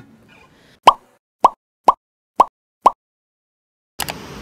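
Five short, sharp pops about half a second apart, set against silence.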